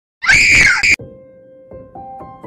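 A loud, high-pitched scream of under a second that cuts off suddenly, followed by soft music with held notes.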